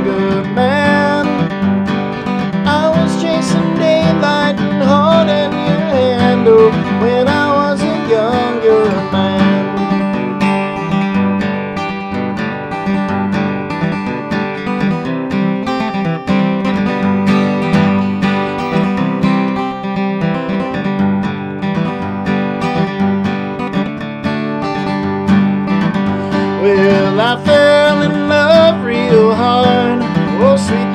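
Solo steel-string acoustic guitar strummed and picked in a folk song. A man's voice sings over it for the first several seconds and again near the end, with the guitar playing alone in between.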